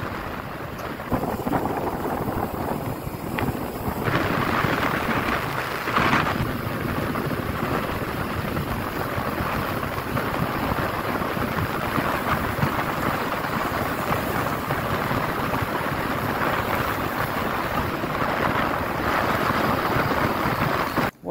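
Wind buffeting the microphone of a camera riding on a bicycle coasting fast downhill, a steady rushing noise that grows louder about four seconds in, with a brief gust a couple of seconds later.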